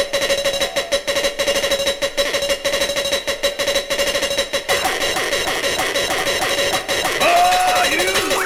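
Early hardcore techno breakdown from a DJ mix: the kick drum drops out and a very fast rattling roll plays over a held synth tone for about the first half. Near the end, pitched, voice-like sample glides come in, leading back to the beat.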